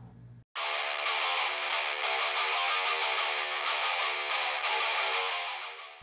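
Distorted electric guitar riff, thin with no bass, cutting in suddenly about half a second in and fading out near the end.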